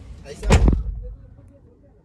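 A car door slammed shut, heard from inside the cabin: one loud, deep thump about half a second in that dies away quickly.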